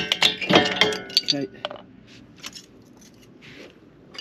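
A burst of sharp metallic clinks and rattles in the first two seconds as a seized rear brake caliper is levered off with a screwdriver and the inner brake pad springs out and clatters onto the tarmac, then quiet.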